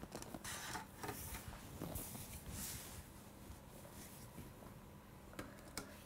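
Faint handling noises of plastic cups on a table: soft rustles and light taps, with two small knocks near the end as a cup is set down.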